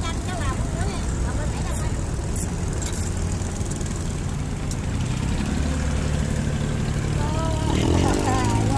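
A boat's engine idling with a steady low drone, growing stronger about five and a half seconds in. A few light clicks sound over it.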